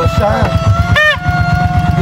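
Plastic torotot party horn blown in a steady, held note, with a short honk that rises and falls in pitch about a second in, over the low, even putter of an idling motorcycle engine.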